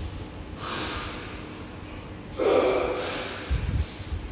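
Flat pedicure blade scraping hardened callus off a heel, two rasping strokes, the second louder, then a few low bumps near the end.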